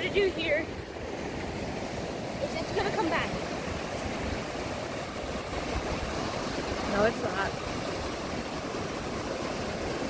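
Ocean surf washing on the beach, a steady rushing noise, broken by brief voice sounds near the start, about three seconds in and about seven seconds in.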